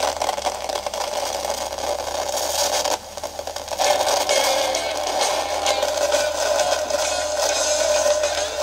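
Crackling, scratchy noise with a low hum from the Tesla NZC 041 record player's speaker, with almost none of the record's music. It is the sign of the fault in the left channel, which the owner suspects is a faulty potentiometer. The crackle drops out briefly about three seconds in, then comes back.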